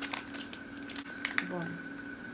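Face-mask sachet crinkling in the hands: a few short crackles of the torn-open packet near the start and again about a second in, over a faint steady hum.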